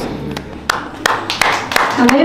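Hands clapping in a steady rhythm, about three claps a second, growing louder.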